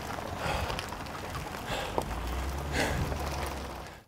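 Bicycle tyres rolling over a gravel road with wind on the microphone, and a cyclist breathing hard, a heavy exhale about once a second after a hard climb.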